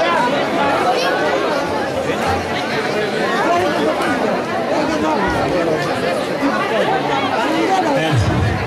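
Crowd chatter: many people talking at once, overlapping voices at a steady level with no single speaker standing out.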